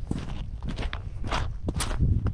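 Footsteps crunching on the icy, snow-covered pebble bank of a frozen river, about two steps a second, over a steady low rumble.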